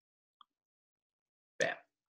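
Near silence with one faint, very short tick about half a second in, then the single spoken word "Bam" near the end.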